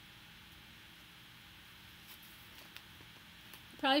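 Faint rustling and a few soft ticks of a brown paper grocery bag being folded and creased flat by hand, over quiet room tone. A woman's voice starts just before the end.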